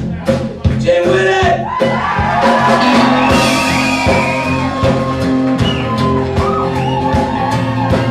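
Live band playing acoustic bluesy folk: a slide guitar gliding between notes over a steady drum beat and bass.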